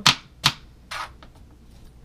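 Kitchen knife chopping celery on a plastic cutting board: three sharp chops in the first second, the first two loudest.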